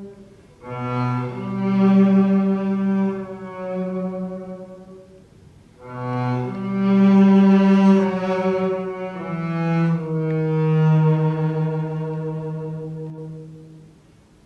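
Unaccompanied double bass played with the bow: slow phrases of long, held notes that swell and fade, stepping between pitches, with short breaths between phrases about half a second in and near the middle.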